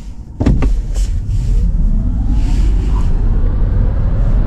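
A Hyundai Ioniq 5 electric car pulling away and gathering speed, heard from inside the cabin: a loud, steady low rumble of tyres on the road, with a faint whine from the electric motor rising in pitch as the car speeds up.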